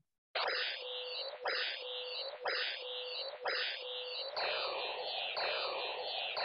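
The vOICe sensory-substitution soundscape: a photo scanned left to right about once a second and turned into a dense wash of tones, high pitches for the top of the picture and low pitches for the bottom. About four seconds in a new image starts, and each sweep now drops in pitch as it follows a hillside falling away.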